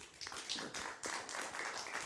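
Audience applauding: a dense, even patter of many hands clapping that sets in just after the speaker's closing thanks.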